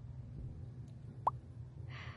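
Steady low rumble of outdoor background noise, with one short rising chirp or pop about a second in.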